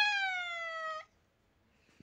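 A woman's voice holding a drawn-out sung note that slides down in pitch and breaks off about a second in, then near silence.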